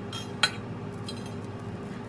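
A few light clicks and clinks of kitchenware being handled, the sharpest about half a second in.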